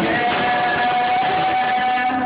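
Live acoustic guitar and singing, with the singer holding one long note over the guitar that ends near the close.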